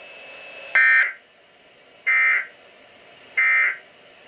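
Three short, shrill data bursts about 1.3 s apart, played through a weather radio's speaker: the NOAA Weather Radio SAME End-of-Message code, signalling the close of the weekly test message.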